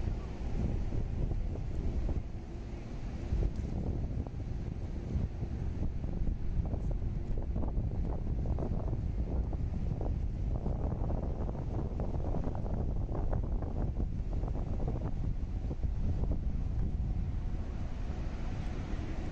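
Wind buffeting the microphone: a continuous low, rumbling noise.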